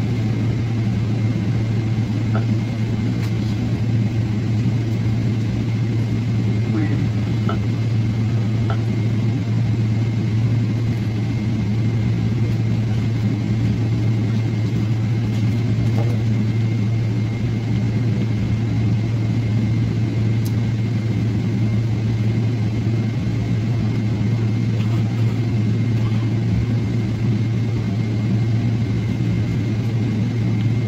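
Airliner cabin noise while taxiing after landing: a steady low engine and air-system hum with a thin, steady high whine running through it.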